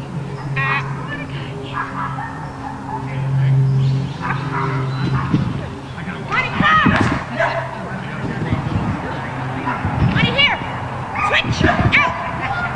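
A dog barking and yipping in short, high, pitched calls, a few times around the middle and again near the end. A steady low hum runs underneath and swells about three seconds in.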